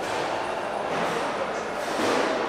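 Steady room noise of a large room: an even hiss and hum with no distinct events.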